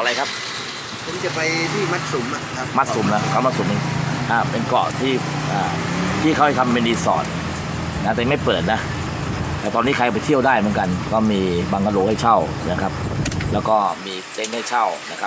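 Talking over the steady low hum of an engine running nearby, which cuts off abruptly near the end.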